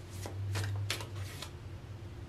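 Tarot cards being shuffled by hand: four short papery rustles a little under half a second apart.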